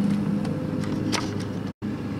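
Steady low machine hum, broken by a very short silent gap near the end.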